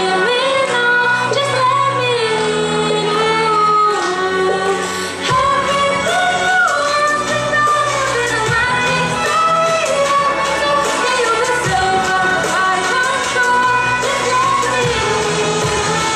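A young woman sings a gliding, ornamented Indian melody into a microphone, accompanied by a bowed violin, over low steady accompanying tones.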